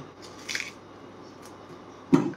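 A brief, soft, wet scrape about half a second in, as a metal spoon works the stone out of a halved yellow peach, with a few faint clicks of handling around it.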